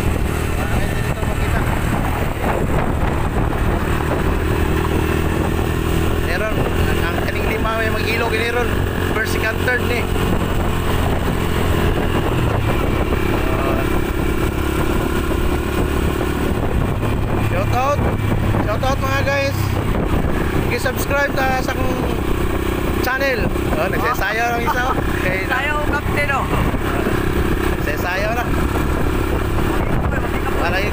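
Motorcycle engine running steadily as the bike rides along, with voices talking now and then.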